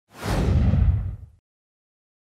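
Whoosh sound effect with a deep low rumble, lasting about a second and a quarter and fading out.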